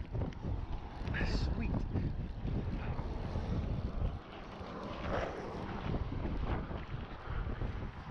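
Wind buffeting the microphone in gusts, a heavy low rumble that dips briefly about four seconds in.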